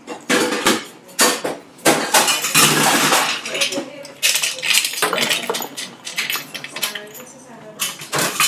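Ice cubes rattling in a metal ice scoop and dropping into a highball glass, a string of sharp clinks and knocks of ice, glass and metal bar tools, busiest a few seconds in.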